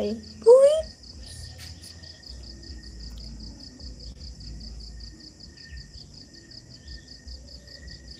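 A cricket chirping steadily: a high, rapid, evenly spaced pulse that keeps on without a break.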